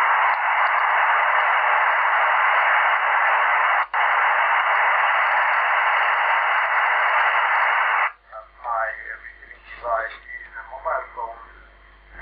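Unsquelched narrow FM receiver noise, a loud steady hiss from the LimeSDR-mini and QRadioLink receiver, with a brief break just before 4 s. About 8 s in, the hiss stops as a signal comes in, and a faint, thin-sounding voice is heard through the receiver.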